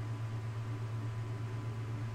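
Steady low hum with faint hiss, the background noise of the recording with nothing else happening.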